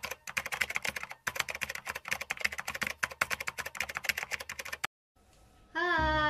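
Rapid keyboard-typing clicks, a typing sound effect, in quick runs broken by two short pauses, stopping about a second before the end. A singing voice comes in right at the end.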